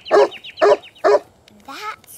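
A cartoon Saint Bernard barking three times, about half a second apart.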